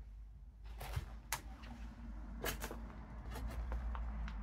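Irregular sharp clicks and light knocks, about seven in all, over a steady low rumble.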